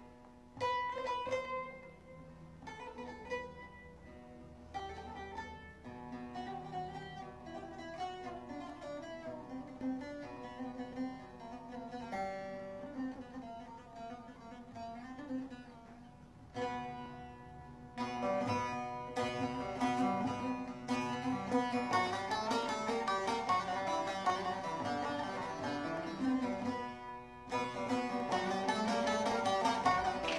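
Turkish folk music played on bağlamas (long-necked lutes): a plucked melody of single notes that grows fuller and louder about eighteen seconds in.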